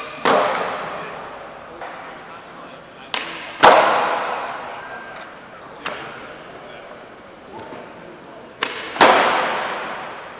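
Skateboard flip tricks on smooth concrete. Three times, a sharp pop of the tail is followed about half a second later by the louder slap of the board landing: once at the start, about three and a half seconds in and about nine seconds in. Each slap echoes and fades slowly in a large hall, and there is a lesser click near six seconds.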